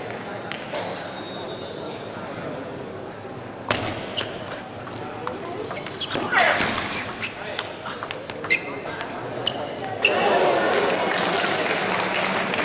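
Table tennis rally: the ball clicks sharply off the bats and the table in an irregular string of hits, with a short shout from a player partway through. Near the end comes louder crowd noise, likely applause for the point.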